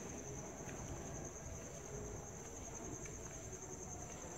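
Crickets trilling: a faint, steady, high-pitched chirring that runs on without a break, with a low rumble of the phone being carried underneath.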